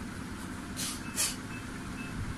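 Pencil writing on paper: two short scratching strokes close together about a second in, over a steady low background rumble.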